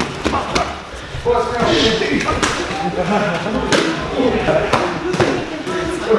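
Boxing gloves and kicks landing during Muay Thai sparring: several sharp thuds spread through the stretch, over voices talking in the background.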